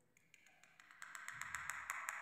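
Faint scratching and light ticks of a cane calligraphy pen (qalam) nib drawing an ink stroke across paper, beginning about a second in.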